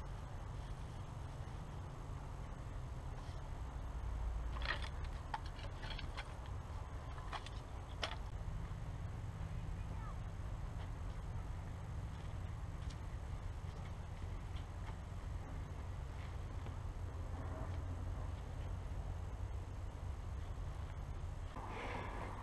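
Quiet outdoor sound with a steady low rumble, and a few faint knocks and clicks between about four and eight seconds in as wooden poles are handled to set up a stand.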